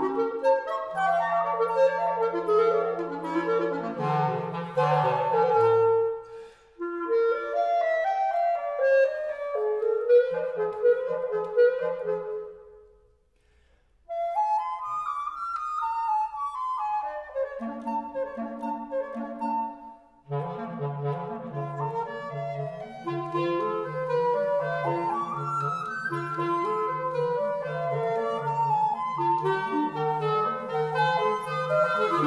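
Period woodwind trio of flute, clarinet and basset horn playing an Allegretto, several melodic lines interweaving. About halfway through the music pauses briefly, and in the later part the lowest voice repeats an even accompaniment figure beneath the melody.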